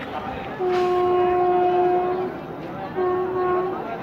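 An approaching passenger train's locomotive horn sounding twice: a long steady blast of about a second and a half, then a shorter blast about a second later, both on the same single note.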